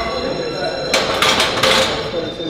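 Loaded barbell clanking: the steel bar and its iron weight plates knock and rattle against the bench press's metal uprights in a cluster of sharp clanks about a second in, at the end of a hard bench press set.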